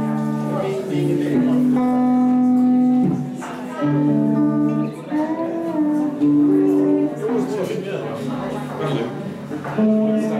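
A live band playing amplified music: guitars and bass under long held notes that change pitch every second or so.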